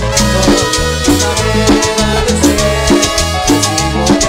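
A live band playing Latin-style Christian worship music, with trumpet, accordion and drum kit over a steady bass line.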